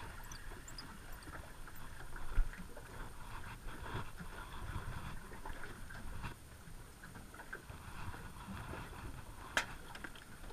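Water lapping against a small aluminium boat's hull, with low rumbling handling noise. A loud knock comes about two and a half seconds in, and a sharp click near the end.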